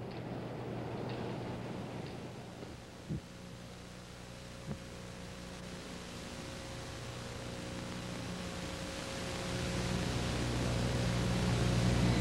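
Steady hiss with a low hum from an old television broadcast recording, with no programme sound. It slowly grows louder toward the end, with two faint knocks a few seconds in.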